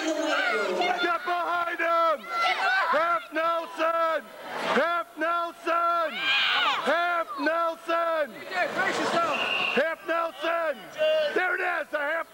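Spectators shouting short, high-pitched calls of encouragement over and over, the same few words repeated in quick succession, with crowd noise behind.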